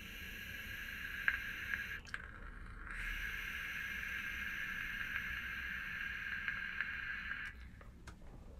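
A vape draw through a rebuildable atomiser on the looser side of mouth-to-lung. Air hisses through the 3 mm airflow pin while the coil crackles lightly as it fires. There is a short pull of about two seconds, a break of about a second, then a longer pull of about four and a half seconds.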